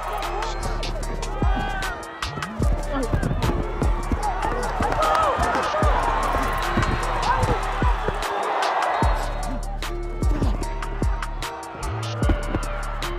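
Background music with a steady beat and bass, with indistinct voices over it.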